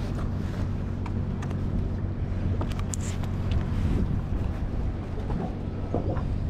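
Boat's outboard motor idling with a steady low hum, with wind on the microphone and a few faint clicks.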